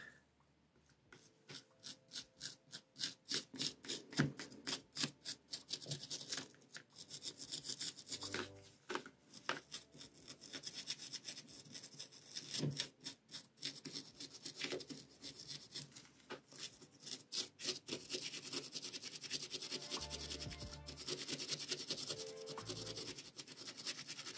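A small brush scrubbing a paint-remover-soaked miniature in quick, even strokes, about three or four a second, working the softened paint loose.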